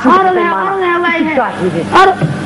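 A woman's voice on a stage microphone, singing one long drawn-out phrase with a bending pitch, then shorter notes near the end, over a faint steady electrical hum.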